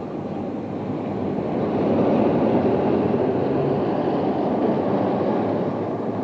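A bus driving past, its engine and road noise swelling over the first two seconds and then holding steady.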